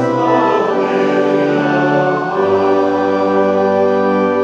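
Hymn singing with organ accompaniment: voices and organ sustaining chords, with the bass moving to a new, lower note about halfway through.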